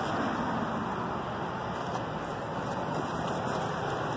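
Steady outdoor background noise: an even low rushing sound with no distinct events.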